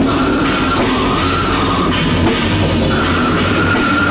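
Slamming brutal death metal played live by a full band: heavily distorted guitar and electric bass over drums, a dense wall of sound at a steady loudness.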